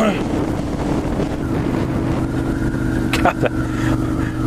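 Motorcycle engine running steadily while riding, mixed with wind noise on a helmet-mounted microphone.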